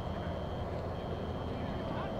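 Steady outdoor background noise with a low rumble and a thin, steady high tone that drops out briefly about half a second in, with faint distant voices.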